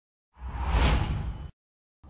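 Broadcast transition whoosh sound effect under a station-logo wipe: a single swelling whoosh over a deep rumble, about a second long, that cuts off abruptly.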